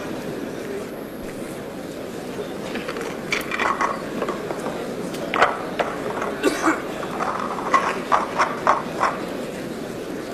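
Steady murmur of a snooker hall audience, with an irregular run of short, sharp clicks and knocks from about three seconds in until near the end.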